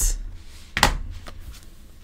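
A single sharp knock about a second in as the sliced-apart halves of a paperback book are handled against a desk, with a low handling bump at the start.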